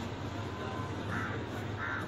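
Two short bird calls, about half a second apart, over a steady low hum.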